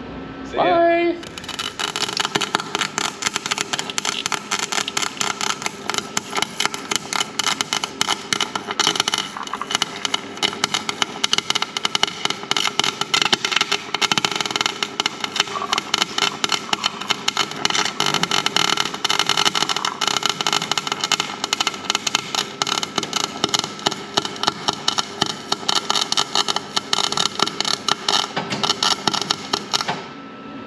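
Wire-feed welder arc crackling steadily as the gears inside an open rear differential are welded together to lock it. The crackle starts about a second and a half in.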